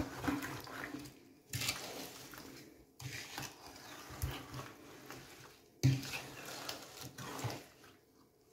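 Wooden spoon stirring halved plums in sugar and juice in a pot: wet sloshing in four strokes, each starting sharply.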